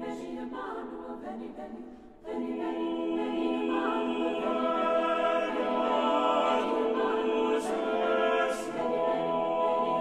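A cappella choir singing sustained chords. The sound thins and dips about two seconds in, then comes back fuller and louder, with two sharp 's' consonants near the end.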